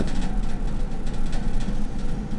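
Steady low hum with an even background hiss, unchanging throughout, with no distinct events.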